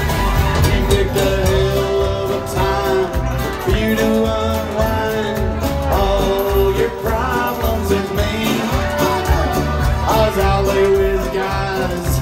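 Live country-bluegrass band playing: mandolin, acoustic and electric guitars, banjo, upright bass and drums together, with a male lead vocal over a steady beat.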